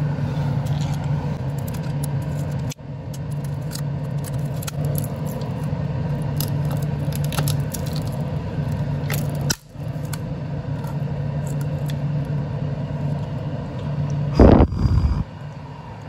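Steady hum of an exhaust fan, with scattered light scrapes and clicks of a screwdriver prodding the burnt-out driver of an Altec Lansing computer speaker. A loud bump comes near the end.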